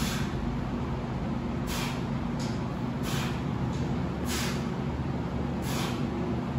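A weightlifter's sharp, hissing breaths during bench-press reps, one about every second and a half, over a steady low hum.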